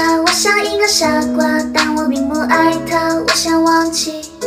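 A woman singing a Mandarin pop cover in a cute, childlike voice over a backing track.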